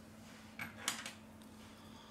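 Faint handling sounds from a suction cup being pulled on a phone's glass back by a gloved hand: a short rustle about half a second in, then a light click just before one second.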